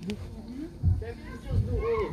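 Indistinct voices of people talking quietly among themselves, with a higher voice rising and falling near the end.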